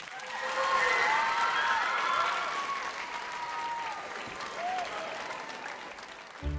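Large theatre audience applauding, with a few voices whooping over the clapping; it swells about a second in and slowly fades.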